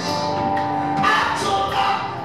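Live worship music: a man singing lead into a microphone over instrumental accompaniment, with long held notes.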